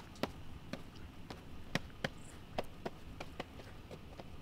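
Irregular light knocks and clicks, about a dozen over a few seconds, as a seat and the metal frame of a ladder tower stand are handled.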